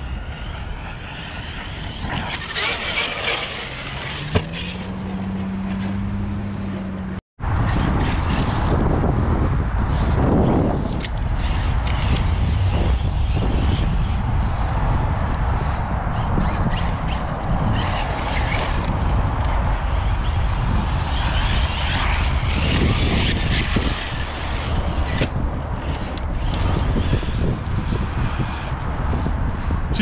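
Steady, loud rushing and rumbling of a driving RC truck and wind on the microphone. About four seconds in, a motor tone rises and holds for a few seconds. The sound drops out for an instant before the rushing resumes.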